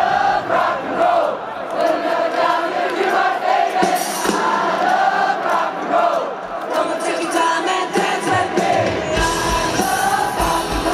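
Live rock concert in a breakdown: a stadium crowd singing along with the lead vocal while the bass and drums drop out, leaving voices, guitar and a few sharp hits. The full band with bass and drums comes back in near the end.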